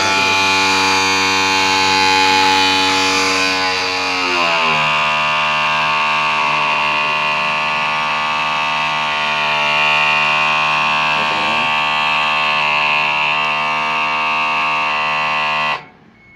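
Electric hydraulic cab-tilt pump of a Mitsubishi Fuso Super Great truck running steadily with a loud hum as it pumps hydraulic oil to raise the cab. Its pitch drops slightly about four seconds in, and it cuts off shortly before the end.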